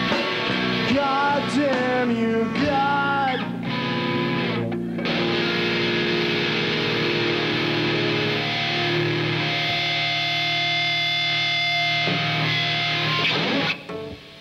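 Live rock band with distorted electric guitars and cello playing the closing bars of a song: bending melodic lines for the first few seconds, then one long held chord that rings for about nine seconds and cuts off sharply near the end.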